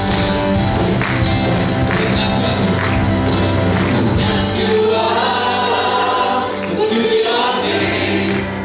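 A live gospel praise band plays, with keyboard and guitar. About halfway through, a group of women singers comes in, singing together into microphones.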